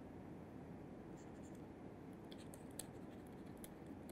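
Faint taps and scratches of a stylus writing on a tablet, scattered from about a second in.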